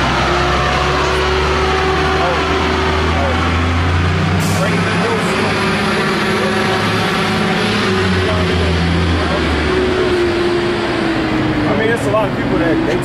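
A heavy road vehicle's engine running close by: a low steady drone with a steady whine above it. The drone drops away about ten seconds in, and the whine falls in pitch as it fades.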